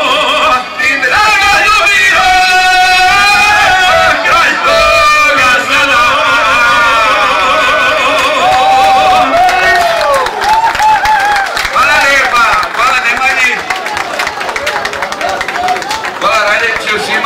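Men singing a traditional izvorna folk song through a PA with violin accompaniment, the voices held in long wavering notes; the singing ends about ten seconds in and gives way to crowd voices with scattered clapping.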